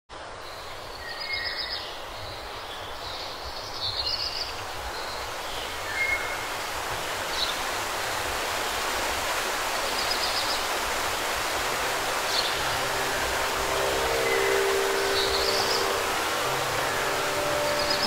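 Outdoor ambience: a steady hiss of background noise growing gradually louder, with short bird chirps now and then. Near the end a held musical drone fades in.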